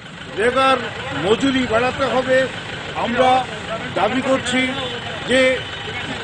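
A man speaking loudly in short phrases, some syllables drawn out.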